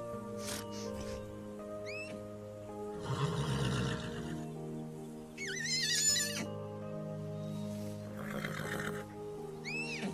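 An orchestral film score with held notes plays under an animated foal's high, wavering whinny about five and a half seconds in. Short breathy sounds come around three seconds in and again near nine seconds.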